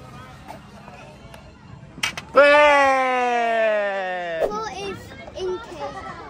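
A sharp click about two seconds in, then a loud, drawn-out wordless vocal "ooh" held for about two seconds and falling steadily in pitch, over faint chatter.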